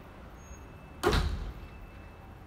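A single sharp bang about a second in, fading over about half a second, over a steady low outdoor hum.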